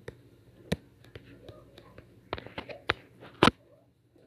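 Faint whispering broken by a few sharp clicks, the loudest a little before the end.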